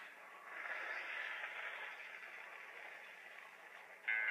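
Faint steady hiss of noise in a gap between loud music, rising slightly about half a second in and then slowly fading.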